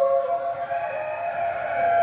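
A singing voice holding long, steady notes that step up and down in pitch, with no drumming.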